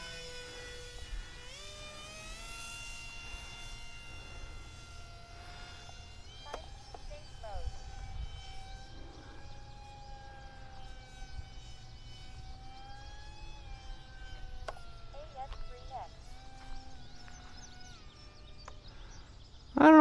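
Brushless electric motor and three-blade propeller of an E-flite Aeroscout RC trainer plane in flight: a whine made of several tones that slowly slide up and down in pitch.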